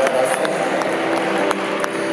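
Concert audience in a reverberant church: scattered claps and crowd noise over a few held instrumental notes.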